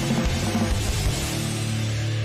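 Pop-punk rock recording playing, with drum kit and electric guitar. Drum hits come through the first second, then a held chord rings out.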